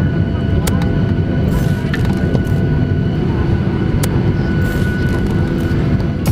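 Airliner cabin noise: the steady, loud drone of engines and air flow heard from inside the passenger cabin, with a few faint clicks.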